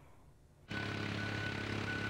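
A brief near-silent pause, then from about two-thirds of a second in a steady, unchanging engine hum with a faint high whine.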